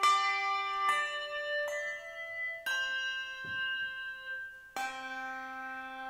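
Handbells rung one note at a time, a slow melody of five strikes, each note ringing on and overlapping the next.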